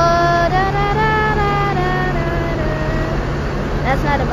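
Bus engines running with a steady low hum, under a drawn-out wordless voice held on a few notes and stepping between them, fading out about three seconds in.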